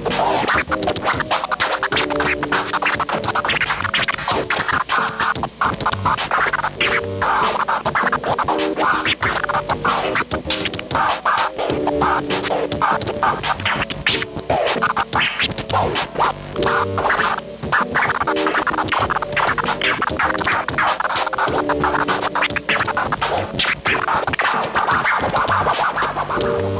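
Turntable scratching: a record is pushed back and forth by hand and cut in and out with the mixer's crossfader in quick, dense strokes. Underneath runs a looping beat with a short melodic phrase that repeats about every two and a half seconds.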